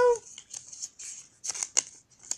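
A sheet of paper being crumpled and handled in the hands, giving a run of short, irregular crackles.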